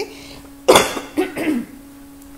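A woman coughing: one loud cough about two-thirds of a second in, then two weaker coughs, over a steady low hum.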